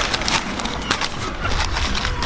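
Newspaper rustling and crinkling as terracotta dishes are wrapped by hand, an irregular run of crackles over a low rumble.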